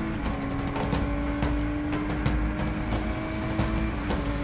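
Ginetta G56 GTA race car's V6 engine heard from inside the cockpit under way, holding a steady note that dips slightly just after the start, climbs slowly, then dips again near the end. Faint ticks and rattles sit under it.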